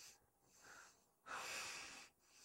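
A person breathing heavily through the nose, in long hissy breaths about a second apart: a faint one early, then a louder one about a second and a half in.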